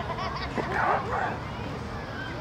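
A dog barking, with indistinct voices of players and spectators in the background.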